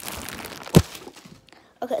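Rustling handling noise, then a single sharp thump a little under a second in, followed by near quiet.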